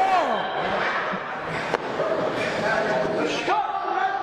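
A single sharp smack from the wrestling at ringside, a little under two seconds in, among shouting voices.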